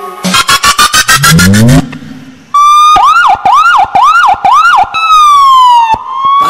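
Dance-mix transition played over loudspeakers: a fast stuttering build-up, then a police-siren sound effect wailing up and down about four times, ending on a long falling tone.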